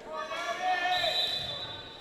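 A long, high-pitched shout, held for more than a second and ringing in a gymnasium.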